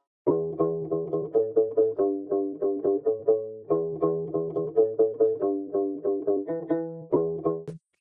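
A strings sample loop at 140 BPM from Splice's AI stack tool playing back: quick short notes with sharp attacks over a held low note. The phrase repeats about every three and a half seconds, playing through twice and starting a third time before it cuts off near the end.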